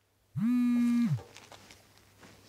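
A mobile phone vibrating on a table with one low, steady buzz just under a second long, its pitch sliding up as the motor starts and down as it stops, as a call comes in. Faint handling clicks follow as the phone is picked up.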